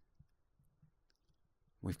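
Near silence with a few faint, small clicks.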